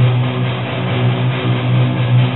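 Live rock band's amplified electric guitars and bass holding one steady, low droning note, loud and unchanging.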